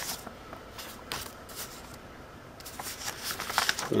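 Paper record sleeve and paper insert rustling as they are handled, in several short crinkles and soft taps, more of them near the end.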